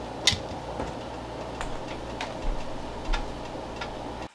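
Glass lid of a Crock-Pot slow cooker set onto the pot with a sharp clink a moment in, followed by a few lighter clicks and soft knocks of handling. A steady background noise runs under it.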